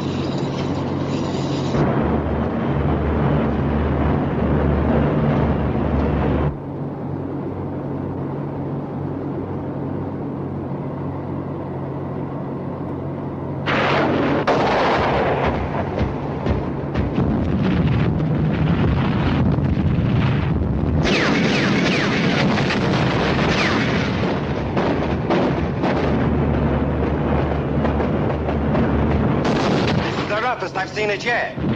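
Steady drone of a transport plane's engines heard inside the aircraft, with a film score over it. The sound drops back a few seconds in and grows louder again from about halfway through.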